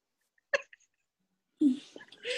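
Mostly dead silence, broken about half a second in by one very short vocal sound, a single clipped laugh or catch of breath, with a voice starting to speak near the end.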